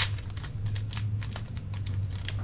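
Foil trading-card pack torn open and crinkled by hand: a sharp crackle right at the start, then a run of small, irregular crinkles.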